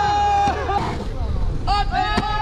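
People yelling and cheering: one long, drawn-out shout that breaks off about half a second in, then scattered shouts, with a fresh burst of yelling near the end.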